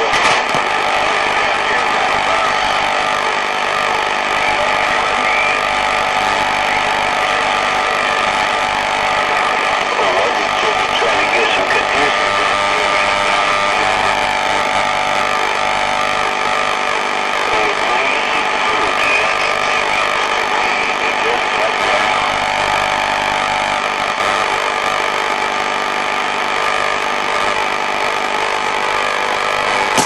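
CB radio receiver hissing with band static between transmissions, with several steady whistling tones and faint, wavering distant voices buried in the noise. The S-meter sits near S1: only weak DX signals are coming in.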